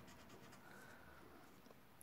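Faint strokes of a felt-tip marker writing on a whiteboard.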